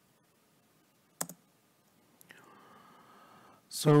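A single sharp click about a second in, against quiet room tone, with a fainter click a second later. A man starts speaking near the end.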